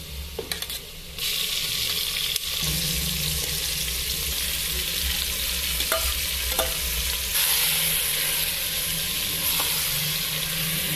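Hot oil in a clay pot sizzling as marinated chicken is tipped in on top of frying potatoes. The sizzle jumps up sharply about a second in and stays loud and steady, with a few light clicks of a spoon or bowl.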